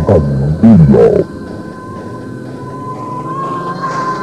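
Electronic synthesizer effects: loud sliding tones that swoop down and back up for about the first second, then drop to a quieter, steady held high tone.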